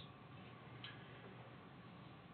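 Near silence: room tone in a lecture room, with one faint click a little under a second in.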